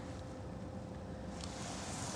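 Faint steady low rumble and hiss of background noise inside a car cabin, with a thin faint tone that fades near the end.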